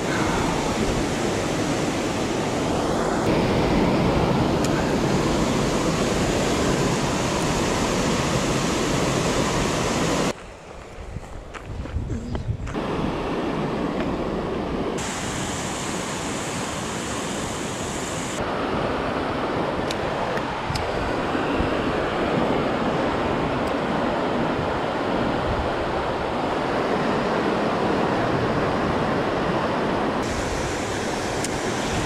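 Water rushing over a concrete river weir and through its spillway, a steady noise that drops away sharply for about two seconds about a third of the way in.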